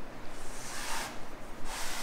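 A metal headliner bow rod being slid through the headliner's fabric listing sleeve, a rubbing, swishing sound in two strokes as it is pushed along.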